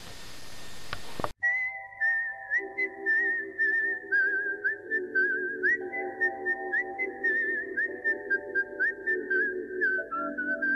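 Background music: a whistled melody wavering in pitch over sustained chords that change every couple of seconds, with light ticking percussion. It opens with about a second of rising hiss that cuts off abruptly before the music starts.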